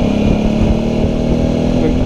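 Suzuki V-Strom's V-twin engine running steadily at a cruising pace, heard from a helmet-mounted camera with wind rushing over the microphone.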